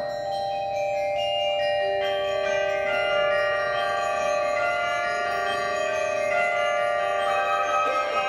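Concert band playing a slow passage of long held notes that enter one after another and stack into full chords.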